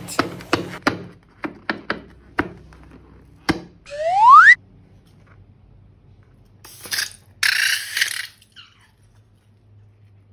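Light taps and rubber creaks as a slime-filled balloon is handled, then a loud cartoon slide-whistle sound effect rising in pitch about four seconds in. Around seven to eight seconds there is a scissors snip at the balloon's neck and a short wet rush as the slime spills into a glass dish.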